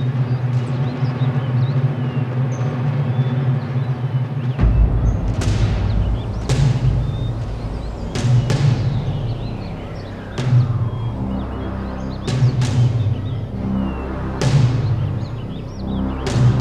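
Dramatic background score: a sustained low drone with sharp percussive hits every second or two, and a deep bass layer coming in about four and a half seconds in.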